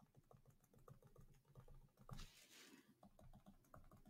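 Very faint, rapid, irregular clicking and tapping of drawing input on a computer as many small marks are drawn one after another, with a soft rustle about two seconds in.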